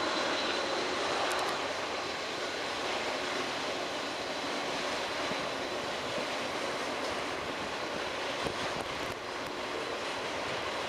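Freight train rolling past: a steady wash of wheel and rail noise from a long string of empty freight cars, with a faint steady high ring running through it.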